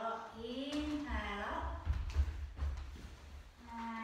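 A woman's voice with long, drawn-out, sliding vowels, the words not made out. Under it in the middle there are low thumps and rumbling, loudest about two seconds in, as the students move on their mats.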